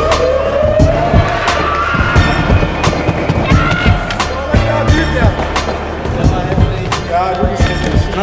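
A music track with a beat and a steady bass line, over skateboard sounds: wheels rolling on concrete and sharp clacks of the board, with voices in the background.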